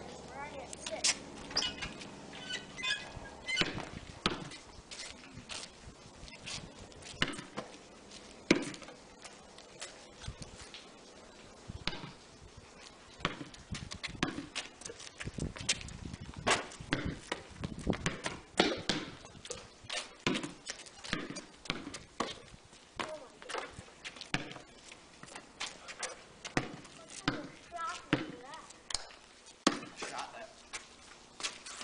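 A basketball being dribbled and bouncing on a concrete driveway: sharp slaps in irregular runs, the loudest about eight and a half seconds in.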